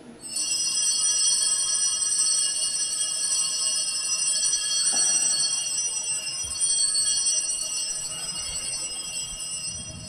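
Altar bells ringing continuously at the elevation of the chalice after the consecration. The ringing starts suddenly and fades slowly over the last few seconds.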